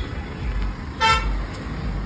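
A car horn gives one short beep about a second in, over a low steady rumble.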